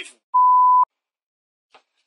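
A single censor bleep: one steady pure tone, about half a second long, that starts and stops sharply, blanking out the word that ends the sentence.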